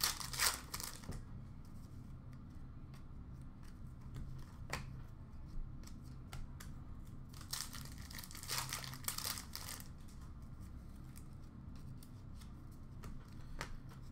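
Hockey card pack wrapper being torn open and crinkled by hand, in short crackly bursts near the start and again about eight seconds in, over a low steady room hum.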